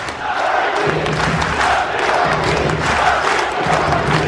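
Stadium crowd of football supporters chanting together, many voices in unison that swell and fade about once a second over the general crowd noise.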